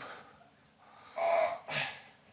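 A man's hard, effortful breathing: two loud breaths out about a second in, the first with a short strained voiced sound. He is straining through the last repetitions of a dumbbell exercise.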